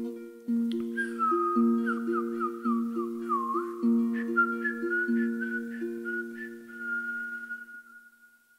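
Troubadour harp plucked in a slow, repeating pattern of low notes, with a high whistled melody gliding and wavering above it; both fade toward the end.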